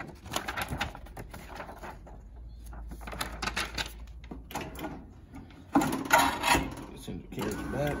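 Paper pages of a freshly perfect-bound book being flexed and riffled by hand, giving short irregular rustles and clicks. About six seconds in comes a louder, denser rattle as the binder's metal clamp carriage is slid back along its rails.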